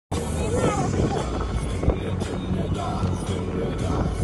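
Open-top safari jeep driving along a rough forest road, engine and road noise heard from on board, with music and people's voices over it and a single thump about two seconds in.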